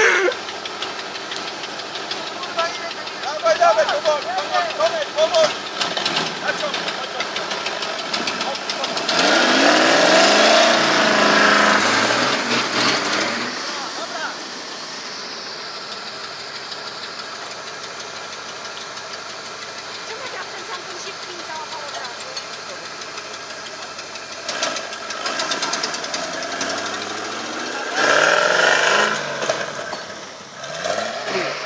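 Off-road 4x4 engine revving hard as it drives through mud, its pitch rising and falling in two loud surges: one around the middle and one near the end. Voices can be heard in the background.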